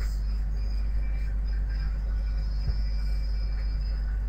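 Steady low hum with faint hiss of background noise, no speech, and a single faint click about two and a half seconds in.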